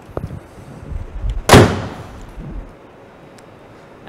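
A BMW 335i's hood pulled down and slammed shut: one loud bang about a second and a half in.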